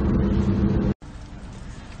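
Steady road and engine rumble inside a moving car's cabin. It cuts off abruptly about a second in, giving way to a much quieter steady hum.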